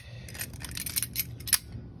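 Several light metal clicks and scrapes as steel locking pliers are worked and clamped onto the jaws of a pair of lineman's pliers.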